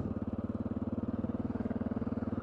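Honda XR650L's air-cooled single-cylinder four-stroke engine running steadily at an even cruising speed, with a low, evenly pulsing note that neither rises nor falls.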